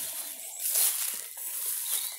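Rustling and swishing of tall pasture grass underfoot, an irregular dry noise that swells briefly about a second in.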